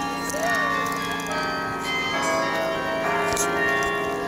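Carillon bells of the Bok Singing Tower ringing, several bell notes sounding together, with a new note struck about once a second and each one hanging on.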